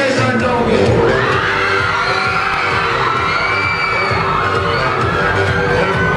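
Loud live-show music with a steady low beat, under a large crowd of fans screaming and cheering.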